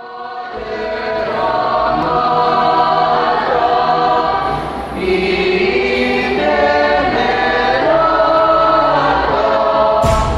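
A choir singing long held chords, fading in over the first second or so.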